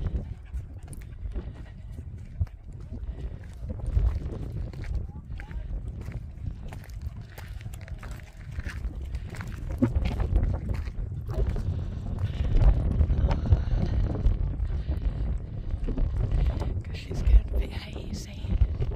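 Wind buffeting the microphone in gusts, a low uneven rumble that grows stronger about ten seconds in.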